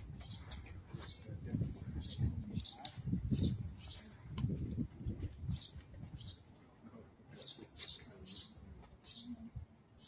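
Small birds chirping, a steady series of short, high chirps about two a second. Low rumbling noise runs under them for the first six seconds or so, then fades.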